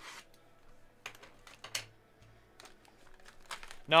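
Plastic shrink wrap on a box of trading cards being slit and handled: scattered light crinkles, scrapes and taps.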